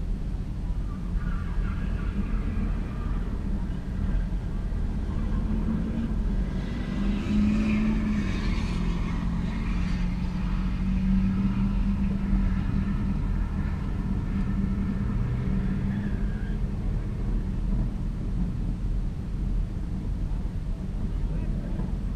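Chevy pickup truck and Volkswagen engines running through a drag race pass, over a steady low rumble. The engine note climbs from about six seconds in and dies away about ten seconds later.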